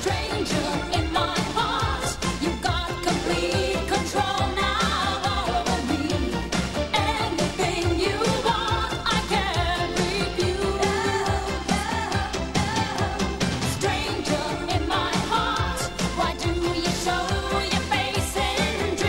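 A pop song: a woman sings the lead vocal over a steady dance beat.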